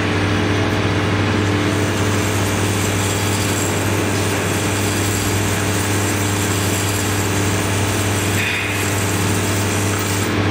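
Vibratory bowl feeder running: a steady hum with metal springs rattling continuously as the vibration walks them around and up the bowl's spiral track.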